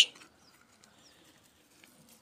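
Quiet open-air ambience with a few faint, high, short bird chirps.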